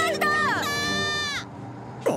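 A cartoon boy's panicked cry: one long, high held wail that drops away and stops about a second and a half in, leaving only a low hiss.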